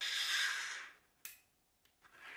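Small magnetic balls clattering together for about a second as they snap into a chain, then one sharp click of a ball snapping on.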